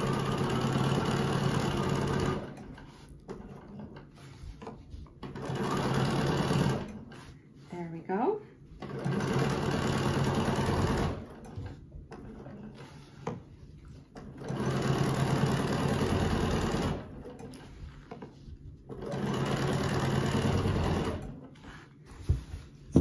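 Domestic sewing machine stitching free-motion with a ruler foot in five stop-start bursts of one to two and a half seconds each, with quiet pauses between as the quilt and ruler are repositioned.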